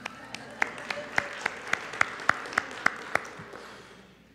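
Audience applauding, with one pair of hands clapping sharply and evenly, about three to four claps a second, standing out above the rest. The applause dies away near the end.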